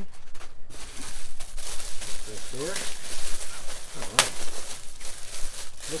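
Clear plastic packaging crinkling and rustling as it is handled and pulled away, with a sharp click about four seconds in.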